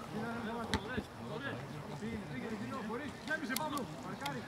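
Voices of players calling out across a football pitch, with a few sharp knocks among them, the loudest about a second in.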